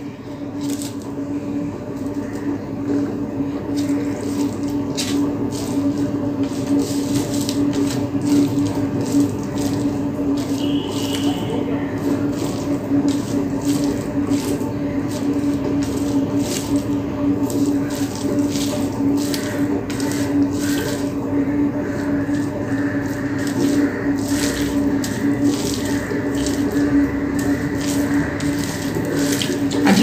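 Fingers mixing cooked rice with red spinach fry on a plate, giving many small wet clicks and squishes. Under them runs a steady low hum with a rushing hiss.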